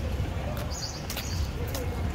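A bird gives one short high chirp about a second in, over a steady low rumble, with a few sharp clicks around it.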